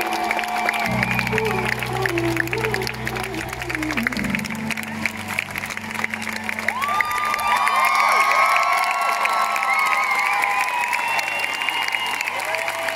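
A live band's closing notes: a held low keyboard chord under a sung melody that ends about four seconds in, followed by a large crowd cheering, whooping and applauding.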